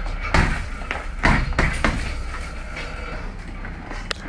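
Gloved punches landing on a hanging heavy bag: a quick run of about four blows in the first two seconds, then quieter.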